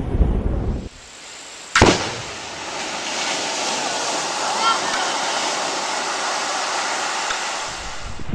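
The low rumble of an underwater blast at sea breaks off about a second in. Shortly after, an underwater charge goes off with a single sharp crack, followed by a steady hiss of the thrown-up water column spraying and falling back.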